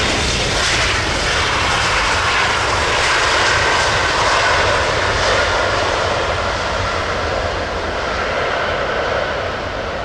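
British Airways Boeing 767-300ER jet engines during the landing rollout, spoilers raised: a loud, steady jet rush that swells slightly in the first seconds and eases a little near the end.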